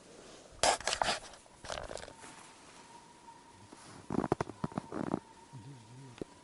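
Close movement noise from the person filming: short bursts of rustling and crunching about half a second in and again around two seconds in, then a longer run of about a second near the four-second mark.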